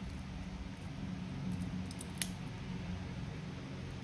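Faint handling of stainless-steel watch bracelets: light metal clicks and rattles, with one sharper click about two seconds in, over a steady low hum.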